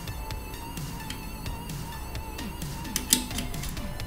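Background music playing softly, with a few light clicks from a small screw and screwdriver being handled; the sharpest click comes about three seconds in.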